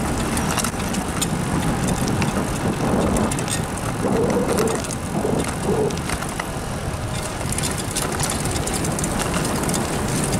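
Riding noise of a bicycle on a paved trail: a steady rumble of wind on the microphone and tyres on the pavement, with scattered clicks and rattles from the bike.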